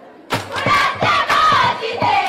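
A group of girls' voices chanting a folk-dance song over quick rhythmic claps, starting abruptly after a brief lull.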